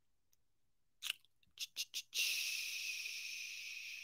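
A few faint mouth clicks, then a long breathy hiss close to the microphone that fades slowly: a person breathing out.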